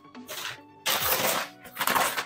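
Large cardboard box and its brown kraft-paper wrapping rustling and scraping as the box is handled and turned over, in two loud bursts, about a second in and again near the end.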